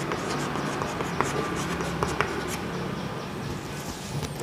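Chalk writing on a blackboard: a steady scratching of strokes with a few short, sharp taps of the chalk on the board, over a low steady room hum.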